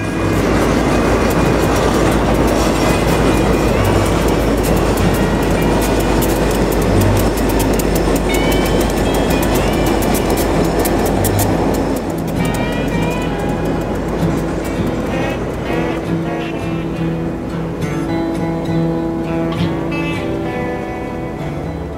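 Instrumental background music over a freight train passing close by, its rumble and wheel clatter loud for the first twelve seconds or so. After that the train noise falls away and the music carries on mostly alone.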